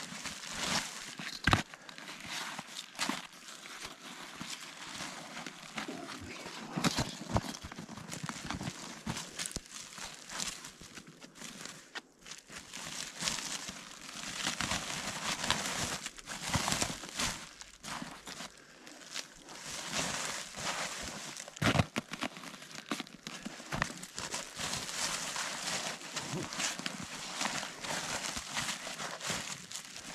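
A woven plastic sack rustling and crinkling irregularly as it is handled and filled with fish, with many short, sharp crackles.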